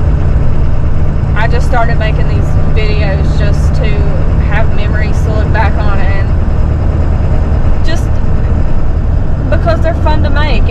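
Steady low drone of a car's engine and road noise heard from inside the cabin, with voices talking on and off over it.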